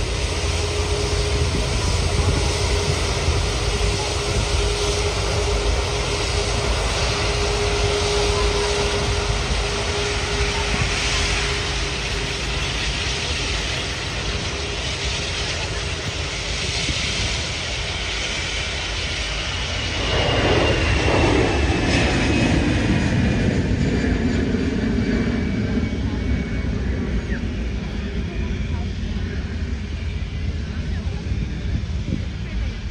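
Airbus A380 jet engines at low thrust as the airliner rolls slowly past: a steady rumble and hiss, with a high whine that slides down in pitch as it goes by. About twenty seconds in, the sound grows louder and a lower tone also falls.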